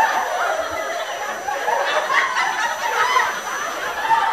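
Sitcom studio-audience laugh track: many people laughing together, sustained at a steady level after a punchline.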